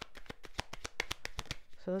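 Tarot deck being shuffled by hand: a rapid, even run of card clicks, about eight a second, while cards are drawn to clarify the spread.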